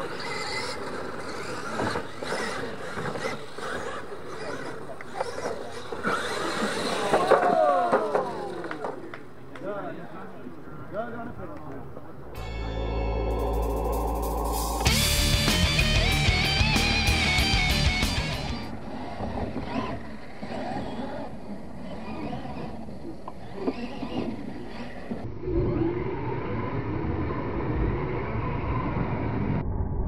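RC monster trucks' motors whining up and down as the trucks race on a dirt track. Then a short burst of music with a regular beat lasts several seconds, and racing sound returns after it.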